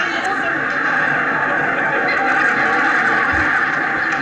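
Sitcom audience laughter, a dense steady wash of many voices held for the whole stretch, heard through a television speaker.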